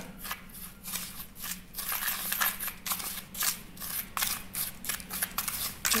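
A spoon stirring and scraping dry baking soda and detergent powder around a plastic tray: a quick, uneven run of short gritty scraping strokes, about three to four a second.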